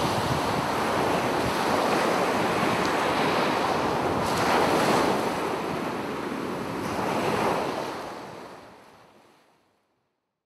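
A loud rushing hiss of noise, swelling a couple of times and fading away over the last two seconds.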